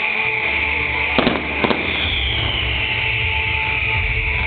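Fireworks display: two sharp bangs a little over a second in, about half a second apart, over a steady hiss of bursting shells.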